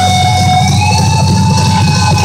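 Live rock band with a single long, high note held and bent upward about two-thirds of a second in, over pounding drums and bass.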